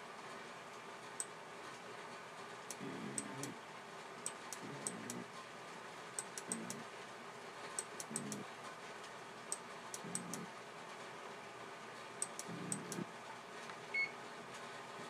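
Faint, irregular sharp clicks, a few every couple of seconds, with a soft low murmur about every two seconds.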